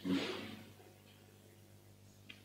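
A pause in the sermon: a brief soft sound in the first half-second, then near silence with only a faint steady electrical hum.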